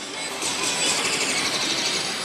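Pachislot machine playing its music and game sounds over the steady din of a busy pachislot hall.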